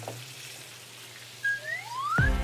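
A rising whistle glide, as a comedy sound effect, about one and a half seconds in: a short high note, then a second whistle that climbs steadily in pitch over about half a second. A faint steady low hum runs underneath.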